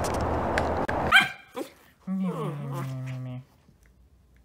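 A steady outdoor rushing noise cuts off about a second in. A husky puppy then gives a short high yip, and a little later a longer, lower, drawn-out cry that sags in pitch before stopping.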